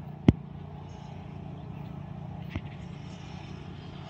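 A steady low background hum, with one sharp click about a third of a second in and a fainter click a little past halfway.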